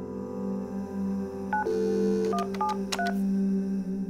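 Telephone keypad being dialed: four short two-tone beeps starting about a second and a half in, a few tenths of a second apart, over sustained background music.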